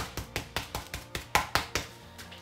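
Flat hand patting a pheasant breast through layers of cling film on a wooden chopping board, about five quick, even pats a second, flattening it into an escalope. The pats stop near the end.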